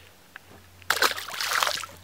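A small bass dropped back into the water on release: a brief splash and slosh about a second in.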